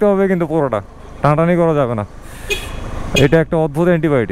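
Speech: a person talking in three short stretches, over low road noise from a motorcycle ride.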